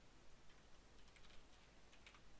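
Near silence with faint taps of computer keyboard keys: a loose run of clicks from about half a second to a second and a half in, and another just before the end.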